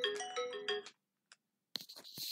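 A short electronic chime melody, ringtone-like, of quick stepping notes that ends about a second in. After a brief silence, a crackling noise starts near the end.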